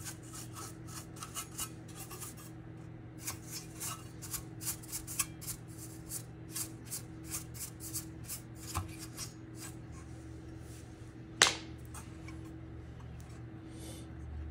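Irregular short rubbing and scratching noises, several a second at times, over a steady low hum. The scratching thins out after about ten seconds, and one sharper, louder scrape comes near the end.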